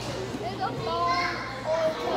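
Indistinct chatter of many children's voices talking at once, over a steady low hum.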